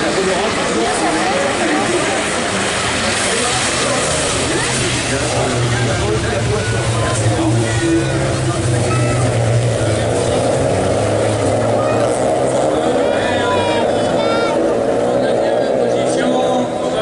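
Several Renault Clio rallycross race cars running hard on the circuit, their engines rising and falling in pitch as they race through the corners, over a continuous din of the field.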